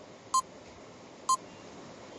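Countdown timer beeps: two short, identical electronic beeps about a second apart, each ticking off a second of the answer time.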